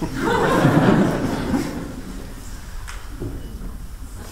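Audience laughing together, loudest in the first second or so and dying away over about two seconds into a few scattered chuckles.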